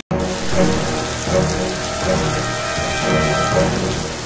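Heavy rain falling steadily.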